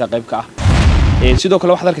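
A man speaking, cut into about half a second in by a loud, rumbling burst of noise on the microphone that lasts just under a second before his speech resumes.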